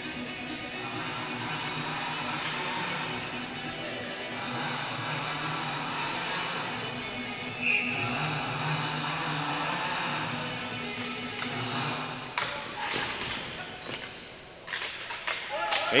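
Music playing in a large arena during a stoppage in play. About twelve seconds in, the music fades and sharp knocks begin: ball hockey sticks and the ball striking the floor and boards as play restarts.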